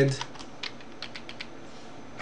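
Computer keyboard keys being typed: a run of light, irregular keystrokes.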